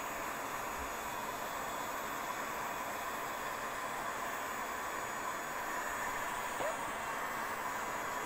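Handheld electric heat gun running steadily: its fan blows an even hiss with a faint steady whine.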